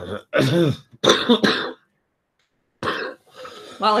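A woman coughs and clears her throat in short bursts, caught while laughing, with about a second of dead silence in the middle before she starts to speak near the end.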